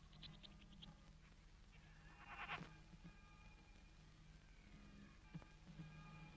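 Near silence over a low steady hum, with faint high chirps near the start and one brief wavering creature-like call about two and a half seconds in: the soundtrack's faint alien swamp effects.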